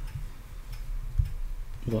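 A few faint clicks over a low, steady hum, in a pause between words.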